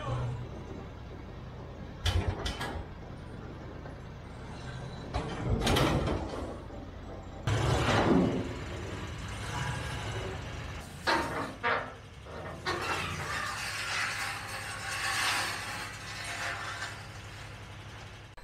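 Metal clanks and thumps as a flat-tired pickup is dragged off a steel car trailer by a UTV, over a steady low engine hum. The knocks come in clusters a few seconds apart.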